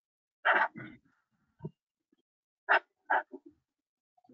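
An animal's short, loud calls in two quick pairs, the second pair about two seconds after the first.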